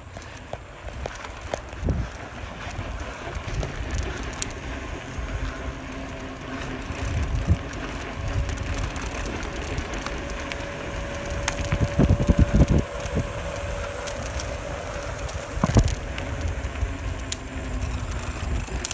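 A bicycle rolling on asphalt, with wind buffeting the microphone over the tyre and road rumble. Scattered clicks and rattles come from the bike, and the buffeting is loudest about twelve seconds in.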